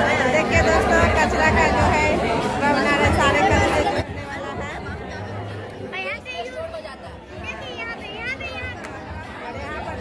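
Many children talking at once in a large, echoing room. The chatter is loud at first and drops suddenly about four seconds in to fewer, quieter children's voices.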